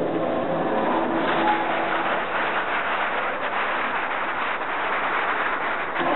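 Dance music ending in the first second, then a steady crackling wash of audience applause.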